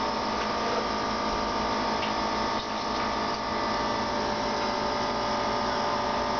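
A steady machine hum with several constant tones, unchanging in pitch and level.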